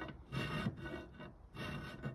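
Bastard file rasping across the edge of a negative carrier's opening in short strokes, two clearer strokes about a second apart.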